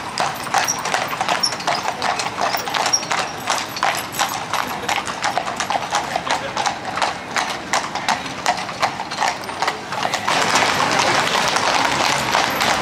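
Hooves of several trotting harness horses clip-clopping on an asphalt road as they pull light two-wheeled carts past, a quick, continuous run of strikes. About ten seconds in, a louder, steady wash of noise joins the hoofbeats.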